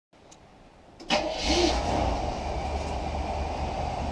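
Barn-find Chevrolet Impala's engine firing up about a second in, with a sudden jump in level, then running steadily with a low rumble.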